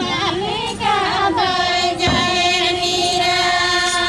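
A group of women singing together, with wavering lines giving way to a long held note. A single hand-drum stroke sounds about two seconds in.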